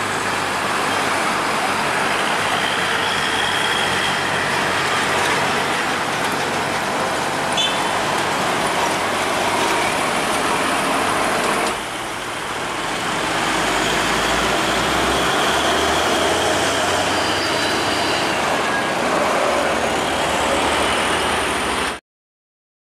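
Busy road traffic: vehicles passing with steady engine and tyre noise. The sound breaks off suddenly about halfway through, then a light Mitsubishi cargo truck's diesel engine grows louder as it approaches.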